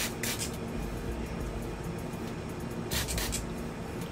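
Trigger spray bottle misting water onto a curly wig: a short spritz near the start and a quick run of three or so spritzes about three seconds in.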